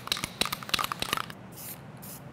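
Aerosol can of flat black spray paint being shaken, its mixing ball rattling in quick clicks, followed near the end by a short hiss of spray.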